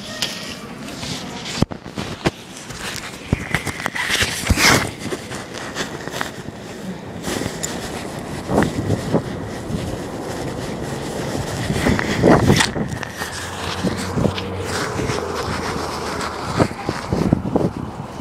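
Handling noise from a covered, carried camera: irregular rubbing, scraping and knocks on the microphone, with footsteps.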